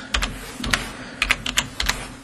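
Keys being typed on a computer keyboard: a run of sharp, unevenly spaced clicks, several to the second.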